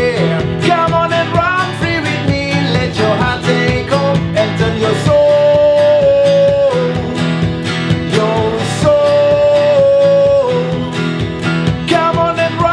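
Acoustic guitar strummed steadily while a man sings, holding two long notes, one about five seconds in and one about nine seconds in.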